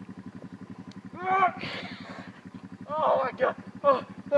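Voices calling out and laughing over a steady, low, rapidly pulsing engine-like hum.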